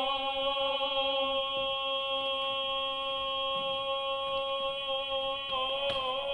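Tenor voices singing without accompaniment, holding one long steady note; near the end the pitch starts to waver and move as a new phrase begins.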